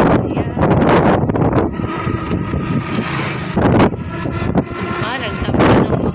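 A motor vehicle running during a ride, with wind buffeting the microphone in loud, uneven gusts. A short wavering pitched sound, like a voice, comes about five seconds in.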